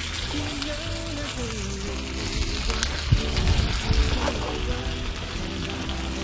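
Pork shoulder medallions sizzling in hot corn oil in a frying pan, a steady hiss, just after being laid in, under background music.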